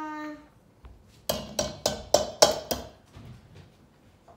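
A wire whisk tapped six times against the rim of a mixing bowl, sharp ringing clicks in quick succession starting about a second in, knocking off the flour mix.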